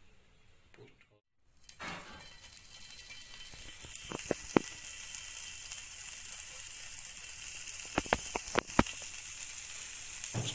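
Hot cooking oil sizzling steadily in a frying pan, starting about two seconds in, with a few sharp pops and spits around four seconds in and a cluster more near eight to nine seconds.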